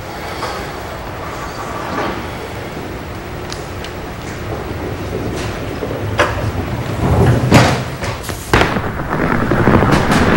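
Five-pin bowling alley sounds: a steady background that builds in the second half into the low rumble of a ball rolling down a wooden lane, with three sharp knocks of ball or pin impacts.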